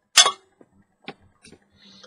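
Handling noise as a glass lamp tube is picked up: one sharp clink with a brief ring just after the start, then a few faint ticks.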